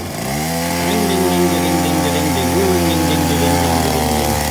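Mini dirt bike's small engine revving up about half a second in, then running steadily at high revs as it pulls away carrying two riders.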